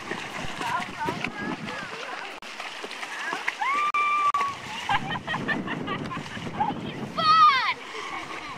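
Water splashing as a person at the back of a raft kicks her legs in the river to push it along, with voices calling out: one held call about four seconds in and another near the end.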